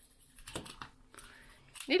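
A few light clicks of soft-plastic magnetic fidget rings snapping together and knocking against each other in the hands, about half a second in and again shortly after.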